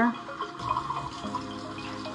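Kitchen faucet running, its stream filling a plastic measuring cup and then falling into a stainless steel sink.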